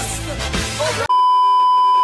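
Music with a heavy bass, cut off about a second in by a loud, steady 1 kHz test-card tone: the TV colour-bar beep.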